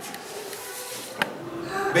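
A paper picture card is slid out of a wooden kamishibai stage, with one sharp tap about a second in.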